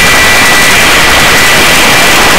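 Helicopter turbine and rotor noise heard from on board while hovering: a loud, steady rush with a constant high whine.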